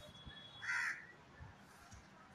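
A crow gives a single short caw, a little over half a second in.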